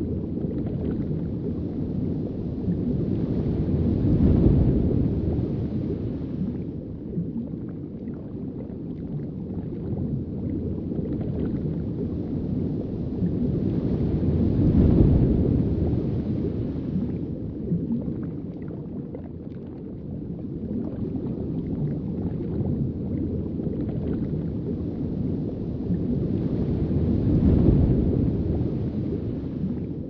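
Muffled underwater rumble of water moving around a camera's microphone, a low noise that swells and eases three times, about every eleven or twelve seconds, as the water surges.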